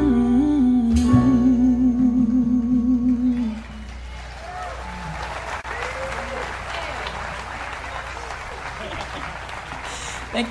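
A woman singer holds a long final note with vibrato over the band, and the song ends about three and a half seconds in. Audience applause and scattered cheering follow.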